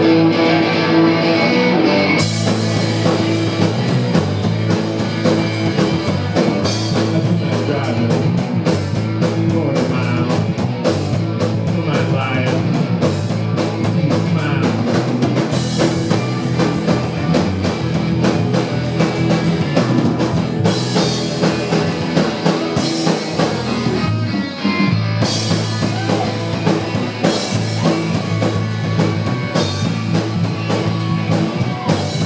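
Live rock band playing: an electric guitar starts alone, then drums with cymbals come in about two seconds in and the band plays on at a steady pace. The cymbals drop out briefly about three-quarters of the way through.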